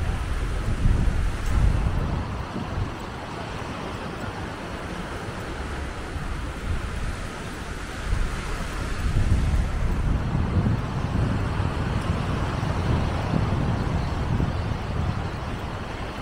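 Wind buffeting the microphone in gusts, stronger at the start and again from about eight seconds in, over a steady hiss of small waves breaking on the shore.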